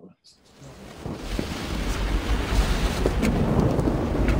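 Thunderstorm: steady rain with low rolling thunder, fading in about half a second in and growing steadily louder.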